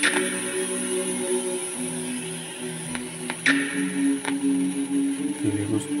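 Music playing through a Zebronics Zeb-Action portable Bluetooth speaker: held notes that shift every second or so, with a few sharp percussive hits.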